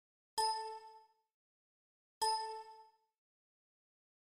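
A bell-like electronic ding, sounded twice about two seconds apart, each strike ringing out in under a second.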